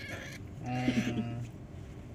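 A pet macaque gives a short, high-pitched squeak at the very start. From about half a second to a second and a half, a low human voice makes a brief sound.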